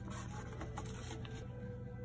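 Steady low hum with faint rustling and ticking as gloved hands handle a paper-and-plastic biological indicator strip packet at an open tabletop autoclave.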